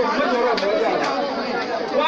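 Speech only: a man speaking into a handheld microphone.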